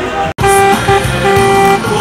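Car horns honking in celebration: two shorter blasts and then a longer held one, after a brief cut-out in the sound.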